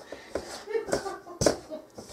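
A pastry blender cutting butter and shortening into flour in a stainless steel bowl, with irregular soft scraping and one sharp knock about one and a half seconds in.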